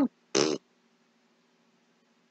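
A man's short, voiced raspberry-like mouth noise of disgust about half a second in, just after the word "lukewarm", followed by only a faint steady hum.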